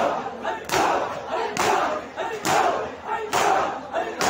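A crowd of men doing matam, slapping their bare chests in unison in a steady beat a little faster than once a second, with loud shouting in chorus between the slaps.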